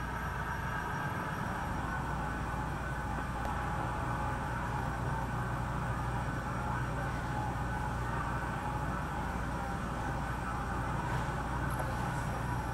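Steady low hum and hiss of room noise, unchanging and without any distinct events.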